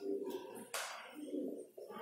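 Pigeons cooing in low, repeated phrases, with a short scratch of a marker stroke on the whiteboard about three-quarters of a second in.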